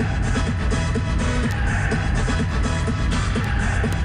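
Music with a heavy bass and a steady beat.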